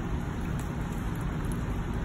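Fish feeding at a pond surface among floating food pellets: a steady, rain-like pattering with faint scattered small ticks from the water.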